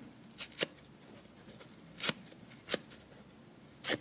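Soft foam side of a dry kitchen sponge being ripped apart by hand. It gives five short, crisp tearing sounds, the first two close together and the rest about a second apart.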